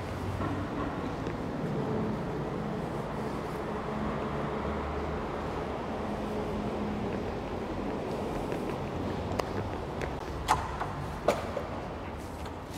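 Steady low rumble of distant street traffic, with a few sharp clunks near the end from a glass door's metal push bar being tried.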